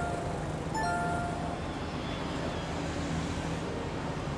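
Low, steady rumble of street traffic, with a short electronic chime of a few tones together about a second in.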